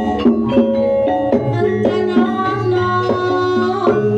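Javanese gamelan music accompanying Lengger dance: sustained pitched notes that step from pitch to pitch, punctuated by frequent sharp hand-drum (kendang) strokes.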